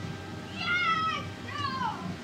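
Two short high-pitched cries over a low background hum, the first slightly falling in pitch and the second gliding steeply downward, while the fair organ is silent.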